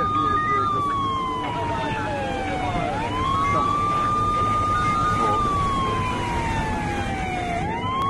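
Police siren wailing: a tone that climbs quickly, holds high, then slides slowly down, starting its climb again about three seconds in and near the end, over a steady low rumble.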